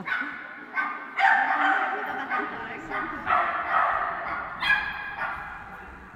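Dog barking and yipping over and over, about seven high-pitched calls in six seconds, the loudest a little after a second in and near five seconds in; an excited dog running an agility course in a large indoor hall.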